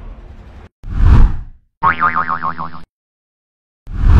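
Edited sound effects: background music fading out, then a short whoosh-like hit about a second in, a wobbling cartoon "boing" around two seconds, a moment of silence, and another whoosh-like hit at the very end.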